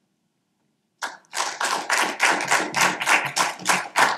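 Hand clapping from a small audience starting about a second in, right after the end of a reading, with quick, fairly even claps at about six a second.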